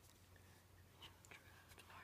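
Near silence: faint room hum, with faint whispering from about a second in.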